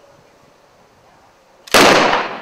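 A hushed wait, then near the end a sudden, loud crack of near-simultaneous single-action revolver shots from three fast-draw shooters, fading out in a short ringing tail.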